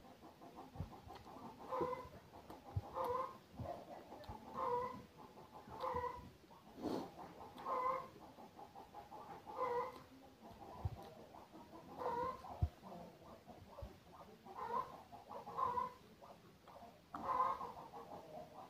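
Close-up eating sounds: a mouthful of rice and egg curry being chewed, with soft low clicks and thuds. Over them, a short pitched sound repeats about once a second.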